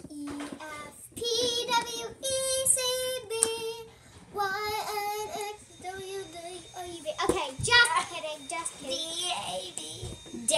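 A girl singing a wordless tune, with several long held notes in the first half, then looser, broken vocal sounds.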